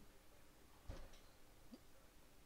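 Near silence: room tone with a faint low hum, broken by one faint click about a second in.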